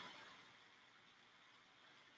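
Near silence: faint room tone in a pause between spoken prompts.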